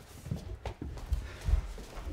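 A run of dull, irregular thumps, about four in two seconds, with a few sharper knocks among them.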